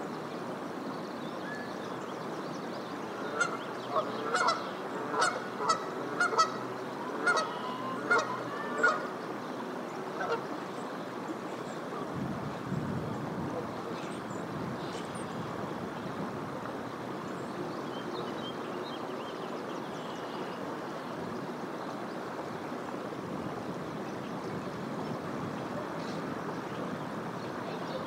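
Canada goose honking, a quick run of about ten honks between about three and nine seconds in, over the steady rush of a flowing creek.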